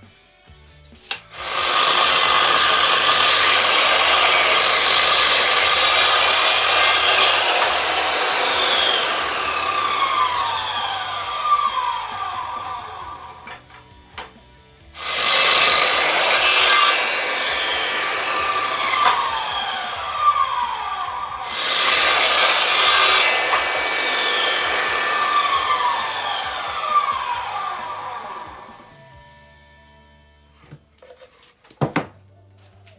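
Electric mitre saw cutting through a round wooden post three times. Each time the motor starts and runs loud through the cut, the first cut lasting about six seconds and the other two about two. After each cut the blade winds down with a falling whine.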